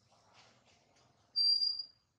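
A single high, steady whistle-like note lasting about half a second, starting about one and a half seconds in, over faint rustling.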